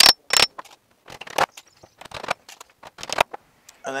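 Claw hammer driving a round-headed nail through the tin roof sheeting into the wooden roof frame. Two hard strikes with a short metallic ring come at the start, then lighter knocks and taps.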